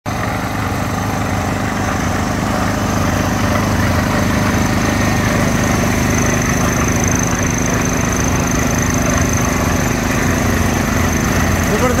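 Construction machinery engine running steadily: an even low hum with a faint, steady high whine above it. A voice starts right at the end.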